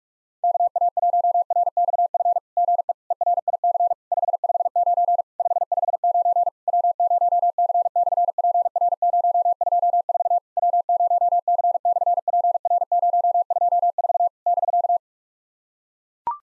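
Morse code sent at 45 words per minute as a single steady tone keyed rapidly on and off. It starts about half a second in and stops about a second before the end. The message is a repeat of a SOTA exchange: the 559 signal report and summit reference W0C/PR-024, ending with a break.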